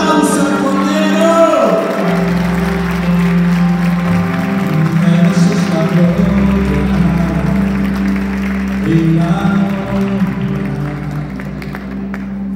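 Live church worship music: sustained keyboard chords over a low bass note that changes every two to three seconds, with a voice singing a gliding line in the first couple of seconds and hands clapping.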